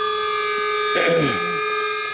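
Steady electric whine from the twin-EDF RC A-10 model, several pitches held together. A short voice-like sound comes about a second in.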